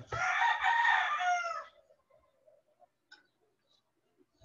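A rooster crowing once: a single strained call of about a second and a half that drops in pitch and fades at its end.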